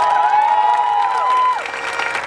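Crowd cheering and whooping, many voices holding high calls over clapping, the held calls dying away about a second and a half in.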